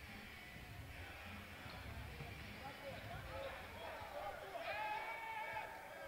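Faint murmur of voices in a basketball arena's crowd and on court, over a low room rumble; the voices grow a little louder and clearer near the end.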